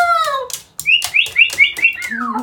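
Moluccan cockatoo calling: one drawn-out arching call that fades out, then after a short pause about five quick, short chirps in a row.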